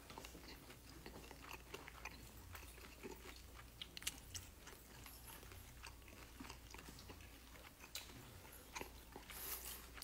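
Faint close-up chewing and crunching of dakgangjeong, Korean crispy glazed fried chicken, heard as scattered small crackles and clicks.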